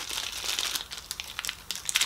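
Clear plastic bag crinkling as it is handled and turned in the hands, a run of irregular crackles.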